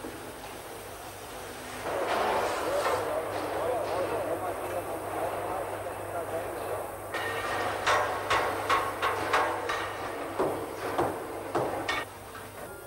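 Locomotive repair-shop noise on an old film soundtrack with a steady low hum: a dense workshop din from about two seconds in, then a string of irregular sharp metallic strikes, like hammer blows on steel, through the second half.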